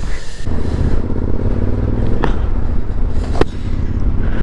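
Motorcycle engine running at cruising speed with steady low wind rumble on the microphone. Two short clicks come about two seconds and three and a half seconds in.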